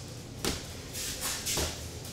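Light boxing sparring: a few soft thuds and scuffs of padded boxing gloves against a raised guard and of feet moving on the gym floor.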